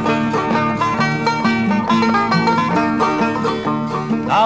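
Banjo picking an instrumental break in a bawdy folk song, backed by acoustic guitar.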